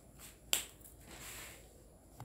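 A single sharp click about half a second in, followed by a soft rustle.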